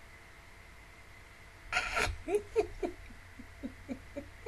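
A woman's stifled laugh close to the microphone: a sudden puff of breath about two seconds in, then a run of short, soft giggles, about four a second, that trail off.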